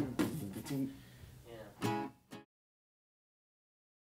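Acoustic guitar strummed by hand in a quick, even rhythm, the strums fading over the first second or so; the audio then cuts off abruptly about two and a half seconds in.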